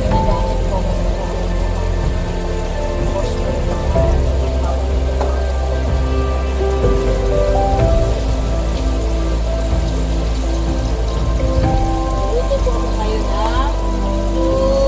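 Food sizzling steadily in a frying pan on the stove, under background music with a slow melody.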